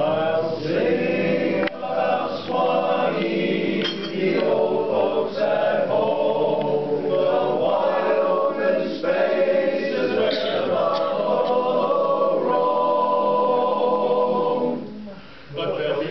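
Male barbershop chorus singing a cappella in close four-part harmony, with a brief break near the end before the voices come back in.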